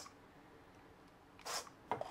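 Quiet room tone, broken about one and a half seconds in by one short hiss.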